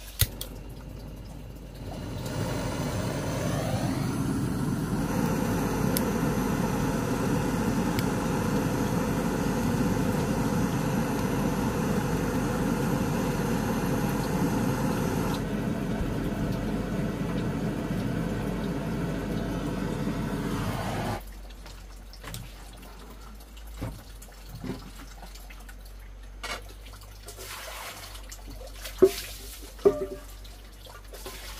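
Handheld butane gas torch on a canister: a click as it is lit, then its flame burning with a steady loud hiss for nearly twenty seconds before it is shut off abruptly. A few light knocks follow.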